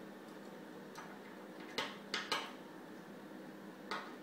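Metal parts of a surgical diathermy handpiece insert clicking together as they are handled and fitted: a faint click about a second in, three sharp clinks in quick succession about halfway through, and one more near the end.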